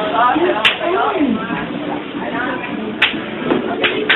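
Children's high voices calling and shouting while playing, with a few sharp clicks: one about a second in and three more near the end.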